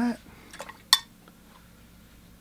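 Paintbrush knocked against a hard dish or water pot: a couple of light taps, then one sharp clink with a brief ring about a second in.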